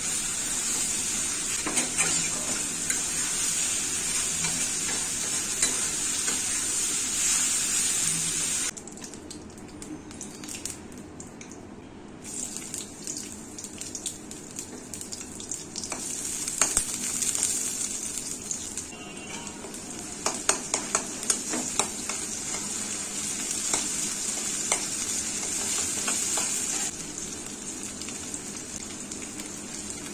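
Oil sizzling in a wok on a gas stove as vegetables and then sliced onions fry, with a metal spatula scraping and tapping against the pan. The sizzle drops suddenly about nine seconds in, comes back with a run of clicks from the spatula, and steps down again near the end.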